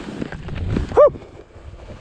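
Skis sliding and scraping over snow with wind on the microphone, then, about a second in, one short, loud shout from a skier.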